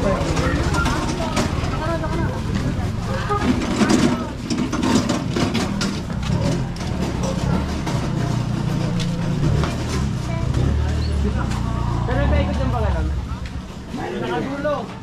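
A motorcycle engine running close by, a steady low rumble that is louder in the second half, under voices of people nearby.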